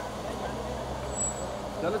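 Car engine idling close by, a steady low hum over street noise. A man's voice starts right at the end.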